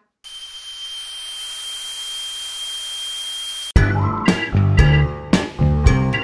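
Dental drill whining steadily at one high pitch over a hiss for about three and a half seconds, then cut off suddenly. Upbeat music with drums and guitar follows.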